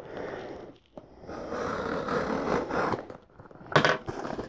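A sealed cardboard shipping box being opened by hand: rustling and tearing of tape and packaging in two stretches, with a short, sharper rip or knock just before the end.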